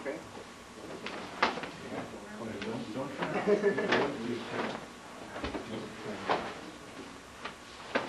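Sharp slaps and knocks at irregular intervals, about one every second or so, of hands and forearms meeting as students practise partner blocking and palm-strike drills. Low, indistinct murmured talk runs underneath and is loudest around the middle.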